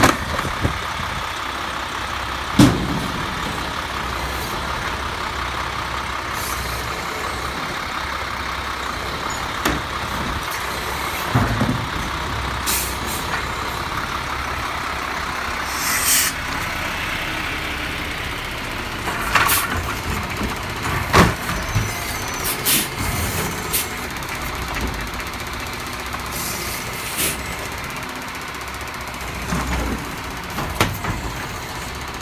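A Peterbilt side-loading garbage truck's diesel engine runs steadily with a constant whine while its hydraulic automated arm lifts and dumps a trash cart. A loud bang comes a few seconds in, and more knocks and clunks follow later, along with a couple of short hisses.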